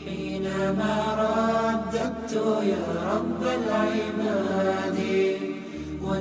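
Chanted vocal music over a steady low drone, its melody gliding up and down in the middle of the stretch.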